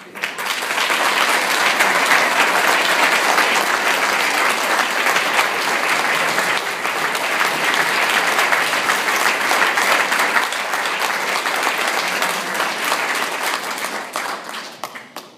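Audience applauding: many people clapping together. The clapping starts suddenly, is at full strength within a second, holds steady, and thins out near the end.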